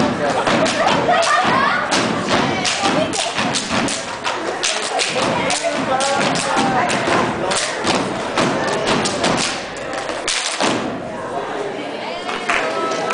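Step team stepping in unison: a fast run of sharp stomps and claps on the stage floor, with voices shouting among them. The stepping stops about ten and a half seconds in.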